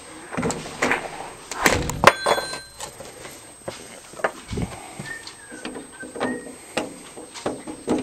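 Irregular knocks and scuffs, loudest in a cluster about two seconds in: footsteps and handling noise from a hand-held camera carried while walking.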